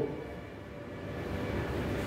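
Steady low background rumble of room noise with a faint hum, and no voice.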